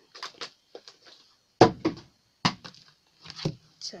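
Handling noise as a tablet is taken out of its cardboard box: a run of short knocks and taps, two of them louder about halfway through.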